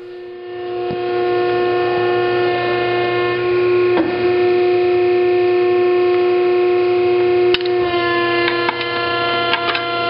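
Hydraulic ironworker (35-ton Metal Muncher II) running its coping stroke through a steel plate: a loud, steady pitched whine with a low hum under it. The whine shifts slightly about seven and a half seconds in, and a few sharp clicks follow.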